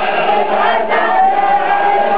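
A large crowd of men chanting together in a hawasa, the call-and-response chant of a Shia mourning procession, with a long note held by many voices through the second half.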